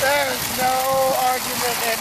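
Shopping cart wheels rattling over gravel while it is towed, an even hiss under it all, with a person's drawn-out yell held on one pitch for about a second. Speech comes in near the end.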